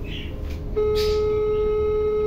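Telephone line tone as a call is placed: one steady beep of about a second and a half, starting a little before the first second.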